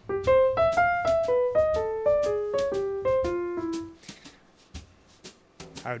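Software piano sound played from a keyboard: a quick run of notes that steps mostly downward and rings out, dying away about four seconds in.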